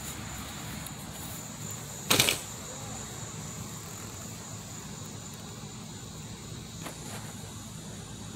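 Crickets chirring steadily in the background. About two seconds in comes one short, loud noise, and a much fainter one comes near the end.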